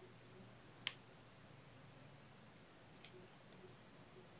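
Near silence, broken by one short, sharp click about a second in and a fainter one near the end: soft copper wire ticking against the wire-wrapped pendant frame as it is worked through.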